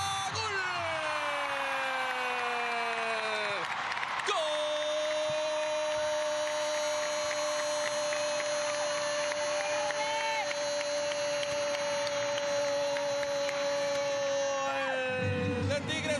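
Television football commentator's long drawn-out goal call over crowd cheering. The cry falls in pitch for about three and a half seconds, then one note is held steady for about eleven seconds.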